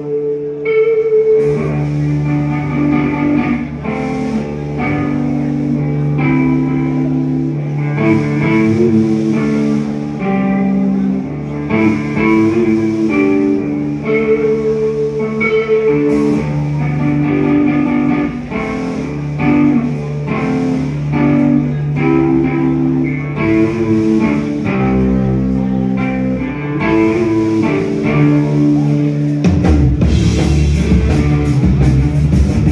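Live rock band playing loud: a melodic electric guitar line of held notes over sustained bass, with light cymbal hits.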